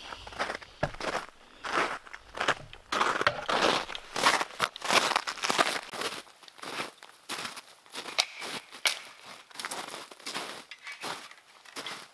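Footsteps crunching through snow at a walking pace, with spruce boughs brushing and rustling past near the start.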